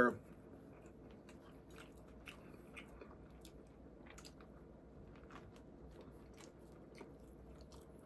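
A man biting into a Burger King Whopper and chewing it, with faint, scattered soft crunching and wet mouth clicks.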